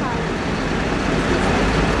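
Steady outdoor background noise: an even hiss with a low rumble underneath.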